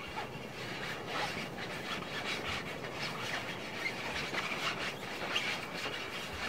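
Close-up handling of a ball against the microphone: a continuous run of small irregular rubbing and scratching sounds.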